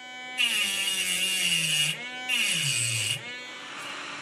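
Mini rotary tool (mini Dremel) with a small cutting disc grinding into the metal shield on a phone's logic board: a motor whine with a harsh grinding hiss in two passes, the pitch sagging as the disc bites, most of all in the second pass. It winds down about three seconds in.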